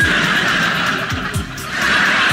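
Background game-show music: a steady hissing synth layer over a low pulsing beat, the hiss dipping briefly about one and a half seconds in.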